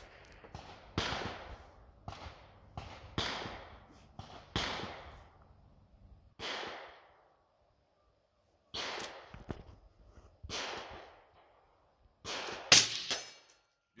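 Rifle gunshots on a range, among them a 16-inch-barrel DMR: more than a dozen sharp reports at irregular intervals, each trailing off in echo, with the loudest near the end.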